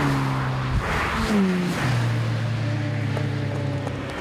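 Sports car engine running hard on a race track: a sustained engine note that drops in pitch just over a second in, then holds steady at high revs.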